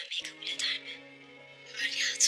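Background score of steady held notes under dialogue, with a voice speaking over it in the first second and again briefly at the very end.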